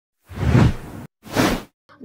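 Two whoosh sound effects of a news channel's logo intro. The first ends abruptly; the second, shorter one follows straight after.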